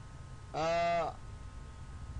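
A man's voice holding one drawn-out vowel for about half a second, flat in pitch, about half a second in.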